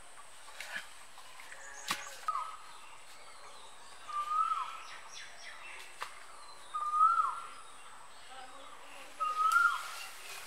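A bird calling four times, roughly every two to three seconds, each call a short held note that drops away at the end, over a faint steady high hiss. There are a few faint knocks in the first two seconds and once more about six seconds in.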